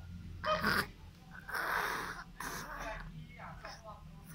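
A person's breathy, hushed voice in three short bursts close to the microphone.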